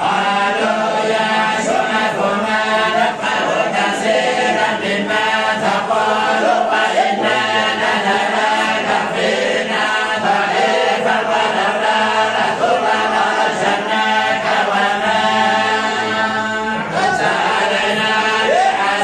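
A group of men chanting a Quran recitation together in unison, many voices in one continuous drawn-out chant.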